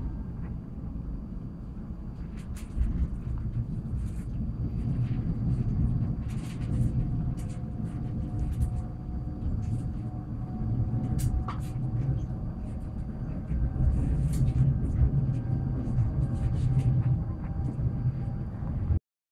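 Inside an electric commuter train running between stations: a steady low rumble of wheels on track that swells and eases, with scattered clicks and a faint steady high whine.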